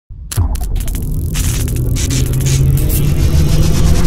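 Intro sound effect of electric energy: a low hum and rumble with rapid crackling that starts suddenly just after the beginning and builds slightly in loudness.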